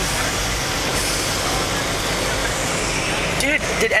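Steady cabin noise of a car driving: low engine and road rumble under an even hiss of tyres on a rain-wet road.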